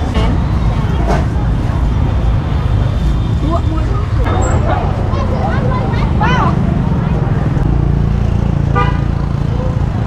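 Roadside street ambience: a steady rumble of passing traffic under people's voices talking nearby, with a short honk near the end.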